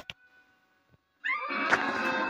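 About a second of near silence, then a sudden loud, shrill scream from a film soundtrack, heard through a TV speaker.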